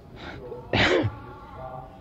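A short, breathy burst from a man's voice with a falling pitch, like a sharp exhale or sneeze-like snort, about three-quarters of a second in; a fainter breath comes just before it.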